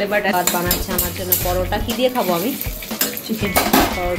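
Metal cooking utensils clinking and scraping in a metal pan as food is stirred, a quick scatter of sharp clicks.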